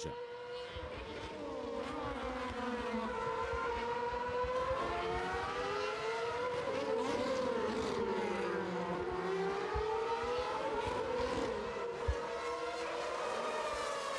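Formula 1 cars' 2.4-litre V8 engines running at high revs on track. Their engine notes fall and rise in pitch through gearshifts and corners, with more than one car heard at once.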